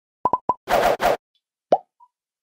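Animated logo sound effect: three quick short beeps, two brief bursts of hiss, then a single pop that slides upward in pitch near the end.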